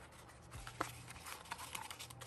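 Faint rustling and light ticks of paper and card being handled: a stack of photocards slid out of a cardboard album folder, with one sharper tick a little under a second in.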